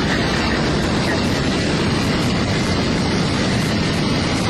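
Jet engine of a land-speed-record car running at speed: a loud, steady, unbroken roar.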